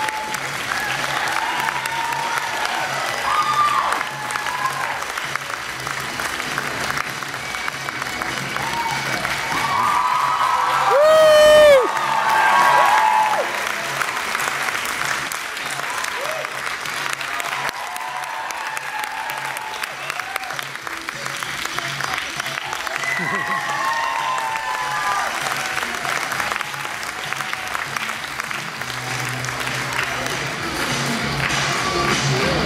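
Audience applauding and cheering through a curtain call, with scattered shouts and one loud whoop about eleven seconds in, over steady background music.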